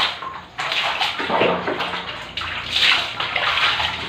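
Bucket bath: water poured from a plastic dipper splashes onto the body and the concrete floor, in a few loud pours.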